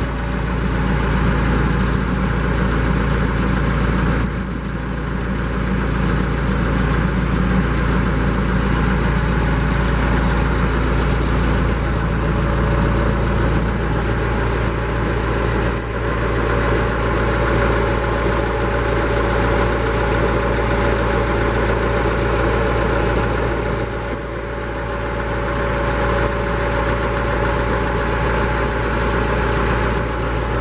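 Tractor engine idling steadily, a constant low running sound throughout.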